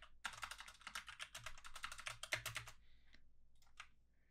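Fairly faint typing on a computer keyboard: a fast run of keystrokes for about two and a half seconds, then a pause and a couple of separate key presses near the end.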